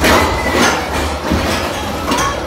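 Roller coaster car running along its track: a loud rattling rumble with rushing noise, loudest at the start.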